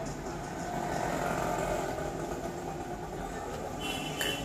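Steady background hum with no distinct events, at a moderate, even level.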